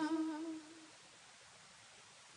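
The last held note of a devotional song, sung with a slight waver, fades out within the first second. Then there is near silence with a faint hiss.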